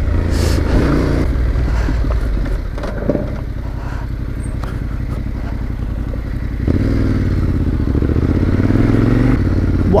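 Yamaha Ténéré adventure motorcycle engine running while riding a dirt track, with a single knock about three seconds in. A little before seven seconds the engine picks up and runs harder.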